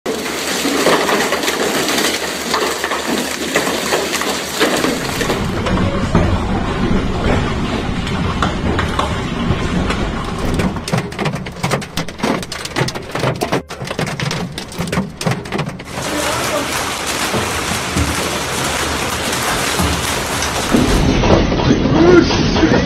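Hail and heavy rain pelting down in a storm, cut between several recordings. About ten seconds in, a dense run of sharp clicks, hailstones hitting a car's windshield and body, lasts for several seconds.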